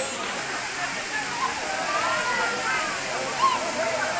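A waterfall rushing steadily into its plunge pool, with a crowd's voices chattering over it.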